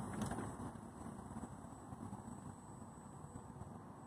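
Power sliding door of a 2013 Chrysler Town and Country minivan closing under its electric motor, a fairly quiet steady mechanical running sound.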